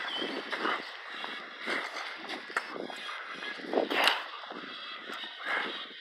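Footsteps of a person walking on an outdoor path, irregular scuffs about once or twice a second, over a faint steady hiss.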